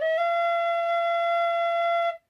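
Tin whistle (a Generation Bb whistle cut down to B) sounding one long, steady, clear note. It steps up just after the start and then holds at about 680 Hz, around a quarter step sharp of E, with the head pushed in to its sharpest setting.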